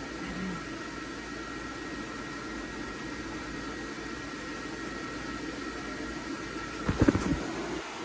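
Electric blower fan keeping an airblown inflatable graveyard scene inflated, running with a steady whooshing hum. A brief loud knock comes about seven seconds in.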